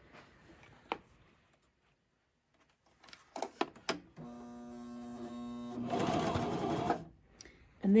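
Three-needle coverstitch machine: a few clicks, then the motor runs steadily for about three seconds, picking up speed and getting louder near the end before it stops. This is a test run after threading the machine from scratch, and it forms no stitches.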